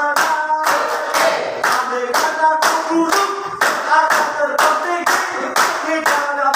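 A group of people clapping in unison, about two claps a second, keeping time with a sung tune.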